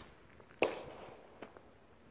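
A single firecracker bang about half a second in, echoing off the stone vaulting, followed by a much fainter click.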